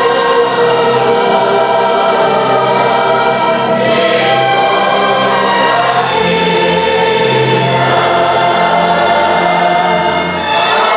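A slow hymn sung by many voices in long held chords, with low bass notes that change every second or two.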